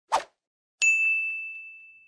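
Title-card sound effect: a brief swish, then a single bright, bell-like ding about a second in that rings out and slowly fades.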